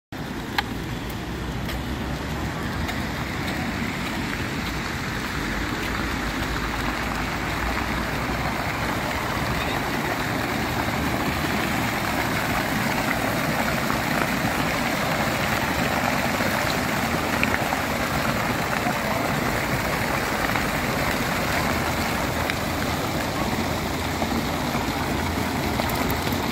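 Steady rush of water from a fountain's spraying jets splashing into the basin, growing slightly louder over the stretch, with a low rumble beneath.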